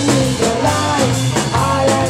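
Live rock band playing: electric guitars and a bass guitar over a drum kit keeping a steady beat.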